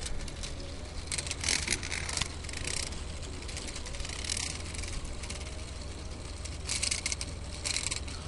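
Plastic K'Nex gear train of a small solar-motor buggy clicking and rattling in short irregular bursts, over a steady low hum.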